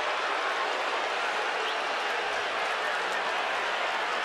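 Baseball stadium crowd reacting to a perfect-game bid broken by a hit-by-pitch with two outs in the ninth: a steady wash of many voices and clapping.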